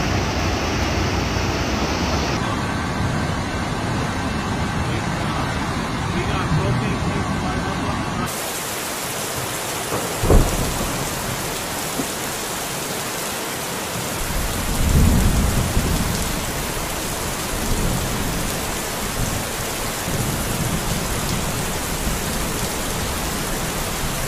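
Heavy rain and rushing floodwater: a steady, even hiss that changes character twice in the first nine seconds. There is a sharp knock about ten seconds in, and a low rumble around fifteen seconds.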